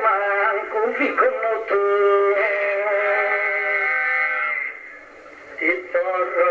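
Men's voices singing a slow, drawn-out chant of Sardinian improvised poetry. The line ends on a long held note that fades out a little before the end. After a brief lull the singing starts again.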